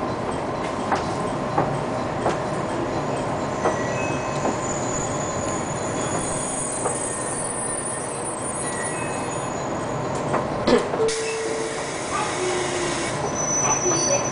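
JR Kyushu 813-series electric train heard from inside, running slowly with a steady rumble and scattered clicks of its wheels over rail joints and points. About eleven seconds in, a sudden high hiss sets in, along with two short squealing tones.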